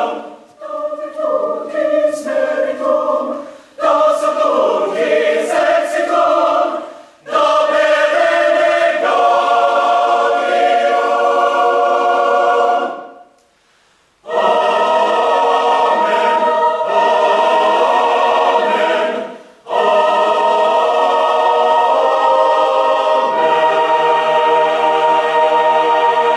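Mixed choir singing a cappella: short phrases broken by brief pauses, a full stop about thirteen seconds in, then long sustained chords.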